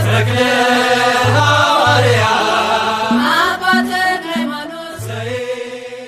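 An Ethiopian Orthodox mezmur (hymn) sung over instrumental backing with low bass notes and a regular beat. The music grows steadily quieter over the last couple of seconds as the song fades out.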